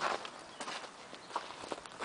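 Footsteps on loose dirt and gravel, several uneven steps.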